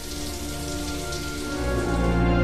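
Steady rain-like hiss from the film soundtrack, with faint music under it. A low bass note and fuller music come in about one and a half seconds in.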